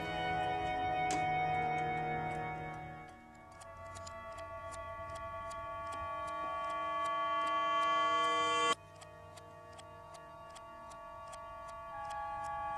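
A clock ticking steadily over sustained musical tones. The tones swell and then cut off suddenly near the end, leaving the ticking on its own.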